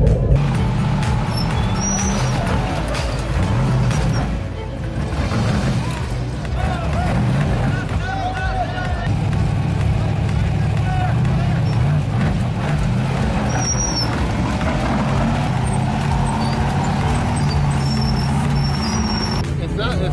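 Engine of an Ultra4 off-road race buggy running low and steady while the car creeps over rocks; the car has been losing throttle through faulty wires in its wiring harness.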